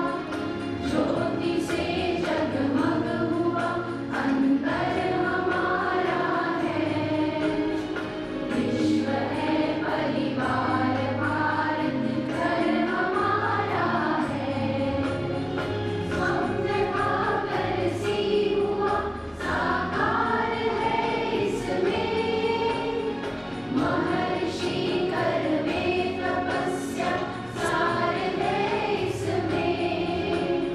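A group of voices singing a song together, in steady held and gliding melodic lines.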